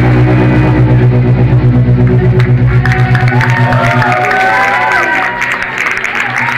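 A live rock band's final chord ringing out through the guitar and bass amps, its low note wavering and fading away about four seconds in. Sliding whistles and cheers from the audience start up as the chord dies.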